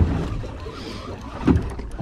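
Steady wind and water noise around a boat at sea, with two short low thumps, one at the start and one about one and a half seconds in.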